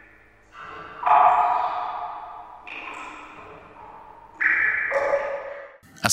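Electronic ringing tones of a logo sting: three chime-like notes, each starting suddenly and fading slowly, about a second and a half apart.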